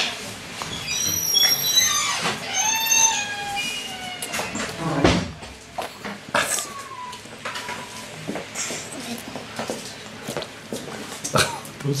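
A toddler's high-pitched squealing cries with falling pitch, a run of them from about a second in and a shorter one around six seconds, her reaction to the sour taste of lemon.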